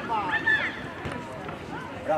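Shouting voices from a youth football game, with one high-pitched call about half a second in over outdoor background noise.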